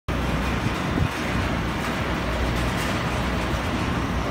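Steady road traffic noise of a busy city street, an even low rumble with no distinct events standing out.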